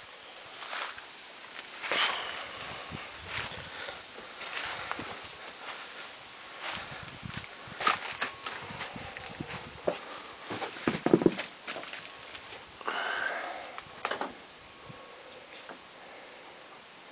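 Footsteps crunching irregularly through dry fallen leaves, with scattered clicks and rustles.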